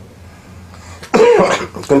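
A short pause of quiet room tone. Then, about a second in, a man makes a brief non-speech vocal sound that runs straight into speech.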